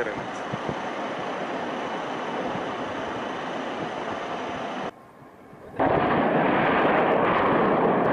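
Steady wind rush on the microphone. After a brief drop, a sudden loud, sustained roar of a distant blast begins a little before the six-second mark and runs on for about three seconds.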